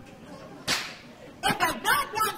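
A short breathy hiss, then a woman's voice starting to speak about one and a half seconds in.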